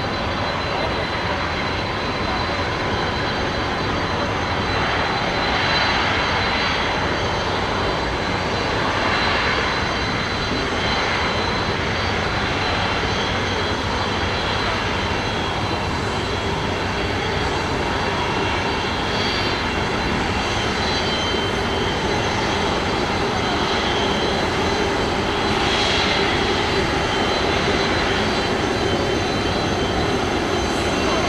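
Jet airliner engines running steadily at taxi power: a continuous roar with a steady high-pitched whine, swelling slightly a few times.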